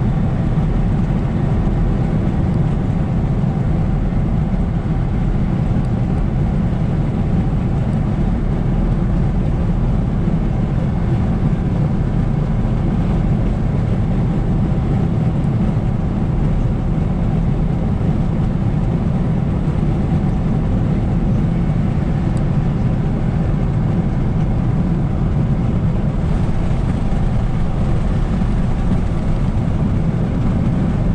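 Steady road noise inside a car's cabin at highway speed, a constant low rumble of tyres and engine.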